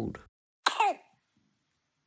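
A single tiny, high-pitched cough from a three-week-old baby boy, about two-thirds of a second in. It is the small early cough that was later diagnosed as whooping cough.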